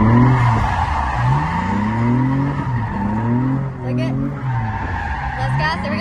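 Nissan 350Z's V6 revving up in about three separate surges while its tyres squeal steadily through a drift slide, heard from inside the cabin.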